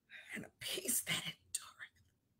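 A woman speaking in a whisper: a few soft, breathy syllables.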